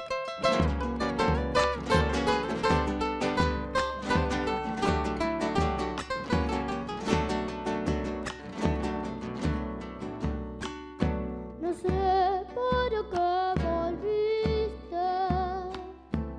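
Acoustic guitars playing the introduction of a zamba, plucked over a regular low bombo drum beat. A boy's voice comes in singing the melody in the last few seconds.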